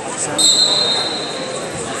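A referee's whistle blown once: a single high, steady blast lasting about a second, starting sharply about half a second in, over the chatter of a large hall.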